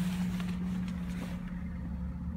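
2015 Jeep Wrangler idling, heard from inside the cabin as a steady low hum.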